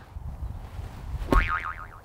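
A golf club strikes the ball from a tricky lie in the rough, one sharp hit that takes a divot, about two thirds of the way through. It is followed at once by a short, high, warbling tone.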